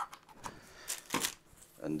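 A couple of short plastic clicks with handling rustle as a USB charging cable is plugged in, about a second in.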